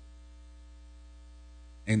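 Steady electrical mains hum, a low tone with a ladder of higher overtones, in a pause in a man's speech. His voice comes back near the end.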